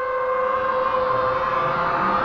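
A synthesized drone of several steady held tones swells in and grows louder. It is the build-up of an animated outro sting, which breaks into a heavy hit about a second later.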